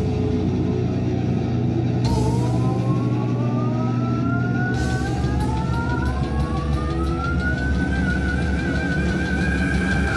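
Live heavy metal band playing a sustained, droning chord with cymbal crashes. Over it, a long held note slides slowly upward for several seconds and ends in a wavering vibrato.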